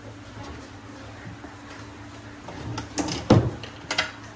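Drawer on metal telescopic slide channels pushed shut about three seconds in: a short sliding rush, then clicks and a loud knock as it closes, with one more click just before the end.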